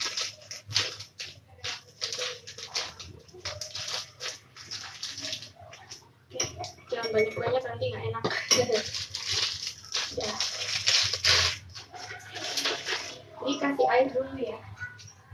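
Water running and splashing in uneven bursts, with small clinks and kitchen handling noise, as a thickener is mixed with water in a cup.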